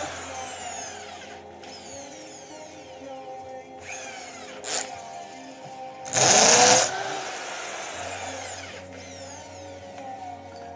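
Corded electric drill spinning a wooden stick through a steel dowel plate to round it into a dowel, run in short bursts: a brief whir near the five-second mark and one loud half-second burst about six seconds in, each followed by a falling whine as the motor winds down.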